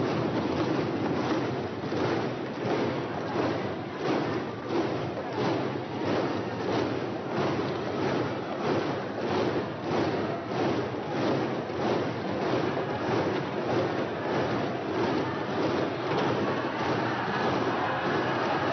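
A chamber full of members applauding in unison, rhythmic clapping and desk-thumping at about two to three beats a second over a crowd hubbub.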